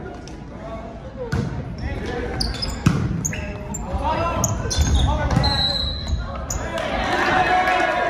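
Volleyball rally in a gym: sharp smacks of the ball being hit, the loudest about three seconds in, with short high sneaker squeaks on the hardwood floor and players shouting, all echoing in the large hall.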